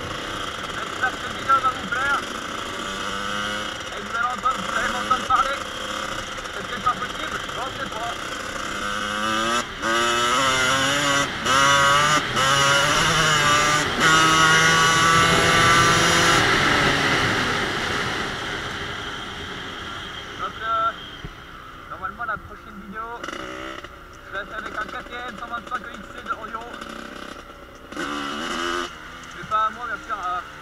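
1986 Kawasaki KX125 two-stroke single-cylinder motocross engine being ridden. It revs up again and again, its pitch climbing and breaking off at each gear change. It is loudest about halfway through, then eases off to lower revs on the track.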